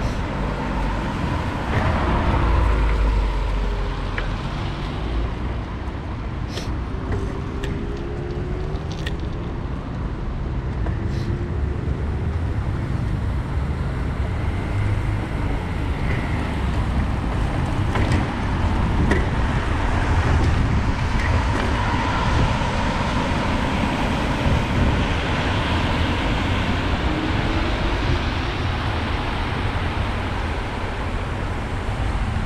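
Steady wind and road noise of a bicycle ride on wet streets, picked up by a handlebar-mounted camera's microphone, with car traffic passing. A few light clicks come a few seconds in.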